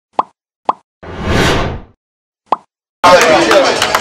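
Intro sound effects: three short pops and a whoosh that swells and fades, separated by silence. About three seconds in, a crowd starts talking and clapping.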